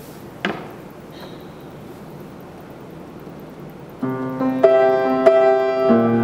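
Low room tone with a single knock about half a second in, then an upright piano starts playing about four seconds in: sustained chords, with new notes struck every half second or so.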